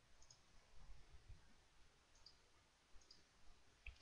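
Near silence with three faint computer mouse clicks, about a quarter second, two seconds and three seconds in.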